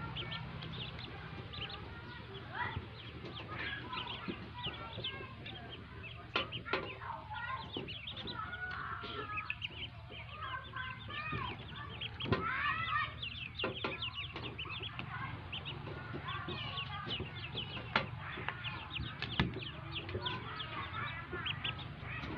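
A brood of newly hatched ducklings peeping: many short, high calls overlapping without a break, with a few louder calls standing out now and then.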